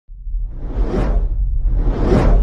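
Cinematic intro sound effects: a deep, steady low rumble under a whoosh that swells to a peak about a second in and fades, then a second whoosh building near the end.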